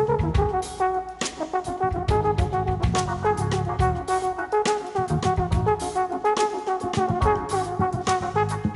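Live jazz with a brass instrument playing a melody line of held and moving notes over drum and cymbal hits and a low bass part.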